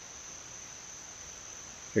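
Outdoor insect chorus: a steady, high-pitched continuous trill over faint background hiss.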